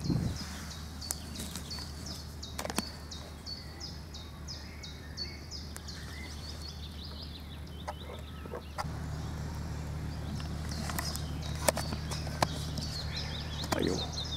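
A bird singing a quick run of repeated high, falling notes, about three a second, for the first six seconds or so, then scattered calls, over a steady low outdoor rumble that gets louder about nine seconds in. A few sharp clicks stand out.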